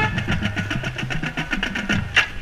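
Marching band percussion playing without the horns: a rapid run of drum strokes, sharp hits over low bass-drum pulses.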